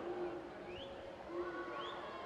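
Fairly faint spectator noise at an indoor swim meet: scattered shouts and cheers with short rising whistle-like calls about once a second.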